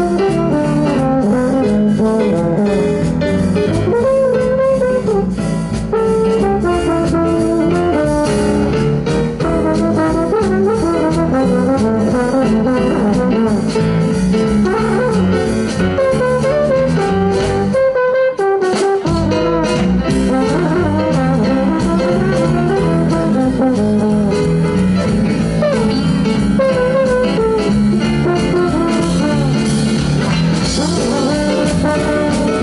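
Live jazz band playing an instrumental break, a trombone carrying the lead over electric guitar, keyboard and drums. The band stops for a moment about eighteen seconds in, then comes back in.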